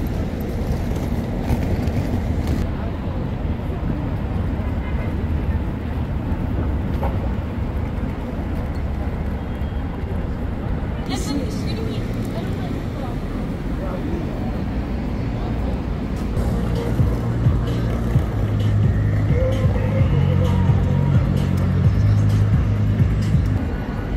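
Busy city street ambience: steady traffic rumble with indistinct voices of passers-by. Over roughly the last third, music with a heavy repeating bass beat comes up loud from a performers' speaker.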